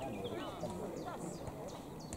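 Faint, distant voices talking, with high bird chirps and a few soft, irregular knocks.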